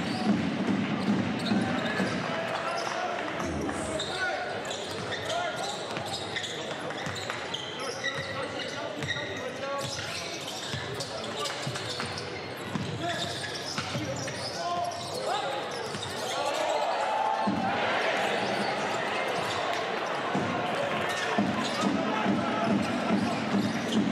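Basketball game sound from courtside: a ball being dribbled on a hardwood floor among players' shouts and arena crowd noise, the crowd getting louder about two-thirds of the way in.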